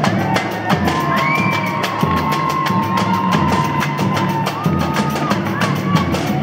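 Samba drum section (bateria) playing: deep surdo beats about twice a second under fast, dense percussion strokes. A long held high note sounds over the rhythm for about four seconds, starting about a second in.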